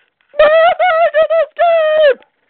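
A high-pitched human voice giving four held, wordless cries in quick succession, the last one the longest and dropping in pitch as it ends.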